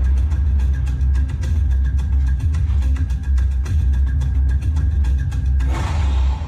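Film soundtrack: a steady deep rumble under tense background score, with a sudden louder burst near the end.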